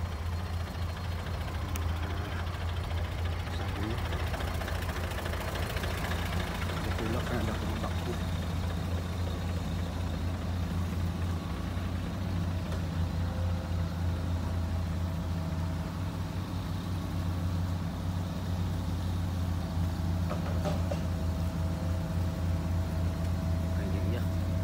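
Heavy vehicle's diesel engine idling with a steady, even low hum; a higher steady tone joins about halfway through.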